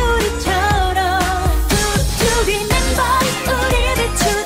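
Pop song: a sung melody with vibrato over a steady bass beat and full backing band.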